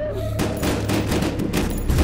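A rapid volley of pistol gunfire, many shots in quick succession starting about half a second in, over a low steady bass drone.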